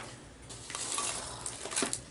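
Soft rustling and crinkling of packing material as hands dig through an open cardboard box, with a few faint clicks.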